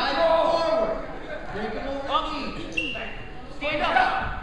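Voices shouting and calling out across a gymnasium, with bursts of shouted calls; the words are not clear.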